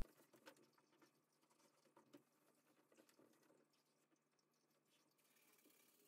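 Near silence, broken by a few faint soft ticks.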